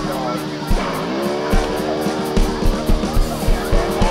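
Electric guitar (Fender Stratocaster) holding a sustained chord that dives sharply in pitch about a second in and swoops back up, over an electronic drum kit beat of kick drum and cymbal hits.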